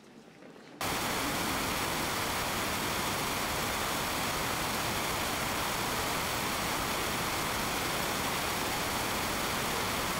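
Steady, even hiss like white noise or static, starting abruptly about a second in and holding at one level with no pitch or rhythm in it: a noise artifact in the audio track rather than anything in the picture.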